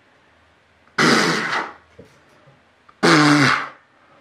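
A man's two loud wordless vocal outbursts, about two seconds apart: first a rough, breathy exclamation, then a voiced groan that drops in pitch at its end. These are reactions of amazement.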